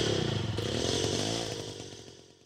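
A small two-stroke moped engine buzzing, its pitch wavering, and fading away to nothing.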